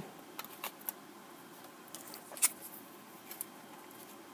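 Card stock and a plastic die-cutting machine being handled: faint rustling with scattered light clicks, and one sharper click about halfway through.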